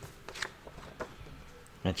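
A few brief rustles and light taps of comic book paper pages being handled, followed by a man starting to speak near the end.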